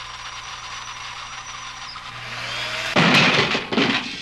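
Motorised robot arm whirring with a steady hum, its motor pitch rising about two seconds in, then a loud harsh burst of noise lasting under a second, about three seconds in.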